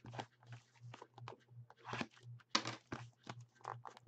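Plastic shrink wrap crinkling and tearing as it is pulled off a sealed trading-card hobby box, in a quick run of irregular crackles that is loudest about two and a half seconds in. A faint steady low hum runs underneath.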